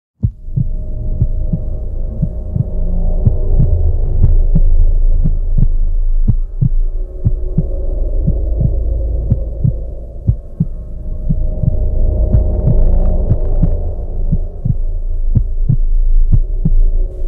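A low droning hum with steady held tones, under a regular low pulse like a heartbeat: an eerie added soundtrack.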